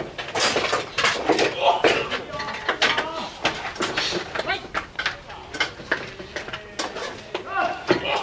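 Baseball players shouting and calling out on the field, with sharp knocks and claps among the voices.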